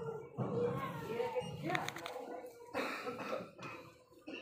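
Indistinct voices of people talking, over a faint steady hum.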